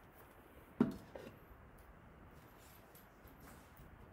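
A single dull knock about a second in, followed by a lighter tap, over quiet kitchen room tone.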